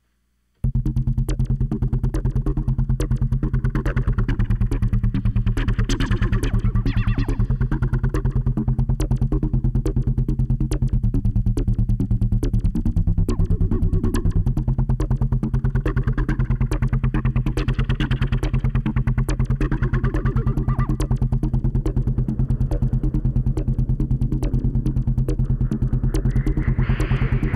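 Synthesizer jam in A, starting suddenly about half a second in: a fast, steady looped pulse over a sustained bass, with synth lead and pad swells rising and falling over it. The bass shifts briefly around the middle.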